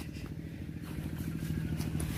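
A small engine running steadily in the background: a low, even hum with a fast regular pulse.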